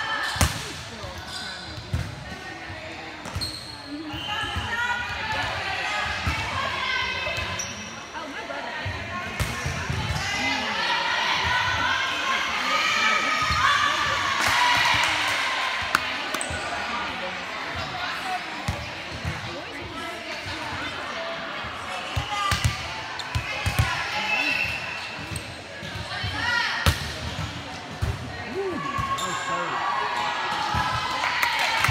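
Volleyball rally on an indoor court: repeated sharp smacks of the ball being served, passed and hit, with players calling out and shouting to each other between contacts.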